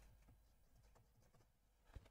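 Near silence, with faint scratching of a bristle brush dabbing oil paint on canvas.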